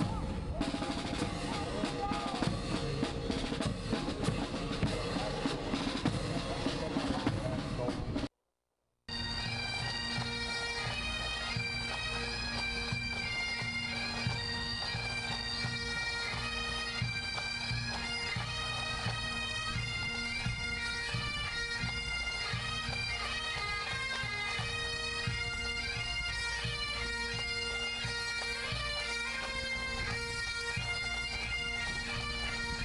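A military marching band playing brass and drums. About eight seconds in, the sound cuts out for under a second. After that a pipe band plays Highland bagpipes, with steady drones under the chanter melody and drums.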